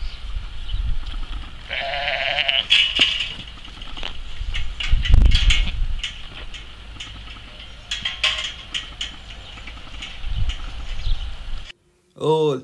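Sheep bleating: one long, quavering bleat about two seconds in, with fainter calls after it. A few sharp knocks and a low rumble of wind on the microphone run through it.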